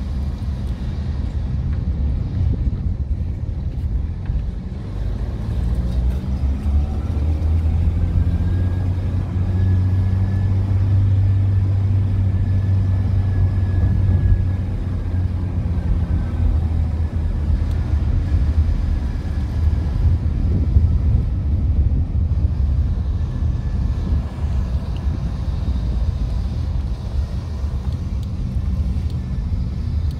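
Car engine and road noise heard from inside the cabin while driving: a steady low rumble, with the engine note rising about six seconds in and then holding.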